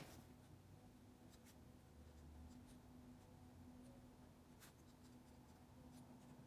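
Very faint scratching of a gel pen writing cursive on notebook paper, with a few soft ticks and a low steady hum underneath.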